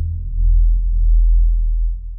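A deep, sustained synthesized bass drone from the intro's title sound effect. It dips briefly at the start, swells again, and begins to fade near the end.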